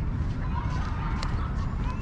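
Outdoor park ambience with a steady low rumble on the microphone, faint indistinct voices of people in the distance, and a single sharp click a little past a second in.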